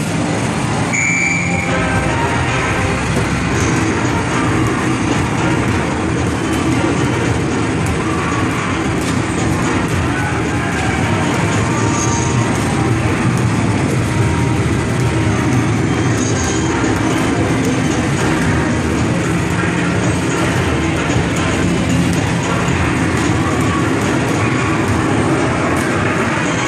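Basketball arcade shooting machine in play: electronic game music over a steady rumble of balls rolling back down the return ramp, with frequent thuds of balls striking the backboard and rim.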